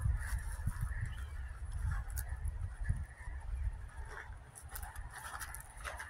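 Outdoor ambience while walking on dry grass: a steady low wind rumble on the phone's microphone and soft footsteps, with faint, irregular sounds in the distance.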